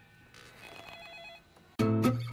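A faint warbling electronic ring, about a second long, then music comes in loudly just before the end.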